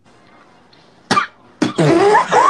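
A person's voice: a short cough-like burst about halfway through, then breathy laughter starting near the end.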